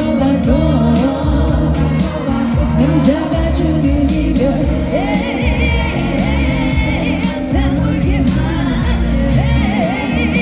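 A female lead vocalist singing a Korean pop ballad live with band accompaniment, heard through the outdoor PA from far back in the audience. Her held notes carry a clear vibrato about halfway through and again near the end.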